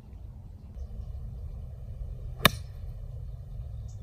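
Golf iron striking a ball off turf: a single sharp click about two and a half seconds in, a cleanly struck shot. A steady low rumble runs underneath.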